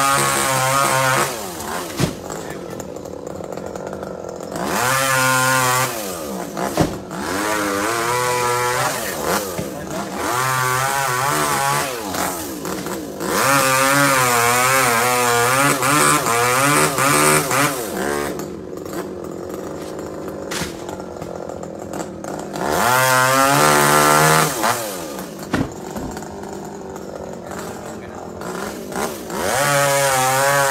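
Two-stroke petrol chainsaw revving in repeated bursts of one to four seconds as it cuts through tree limbs. Its pitch wavers under load and it drops back to a lower running speed between cuts.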